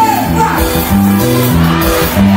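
Live band music with a stepped bass line and a shouted voice over it.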